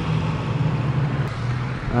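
Steady low mechanical hum.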